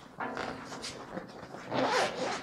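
Zipper on a nylon camera backpack being pulled open, with the fabric rustling as the compartment flap is folded back, a little louder near the end.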